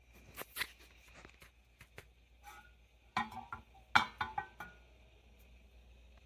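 Light knocks and short metallic clinks of stainless steel cookware being handled, two near the start and a quick cluster around the third and fourth seconds, some with a brief ring.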